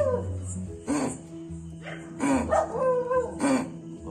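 A dog barking and yelping several times in short sharp bursts, over a steady droning background of music.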